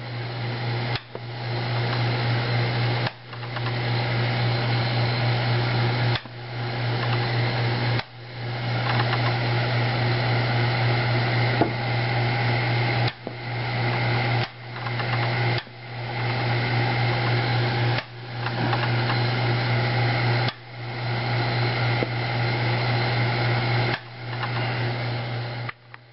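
Homemade CO2 laser running with a loud, steady electrical hum and buzz. It cuts out briefly about ten times at irregular intervals and builds back up over a second or so after each break.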